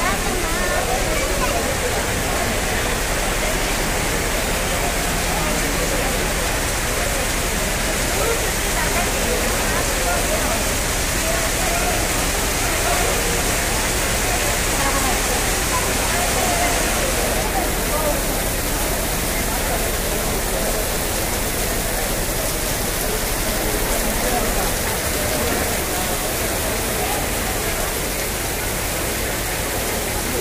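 Heavy monsoon rain pouring down, a loud, steady hiss, with the indistinct murmur of a sheltering crowd's voices beneath it. The upper hiss changes abruptly a little past halfway.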